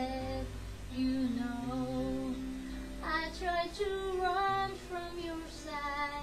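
A woman singing a slow, sustained melody line without clear words over a soft instrumental backing track with steady bass notes.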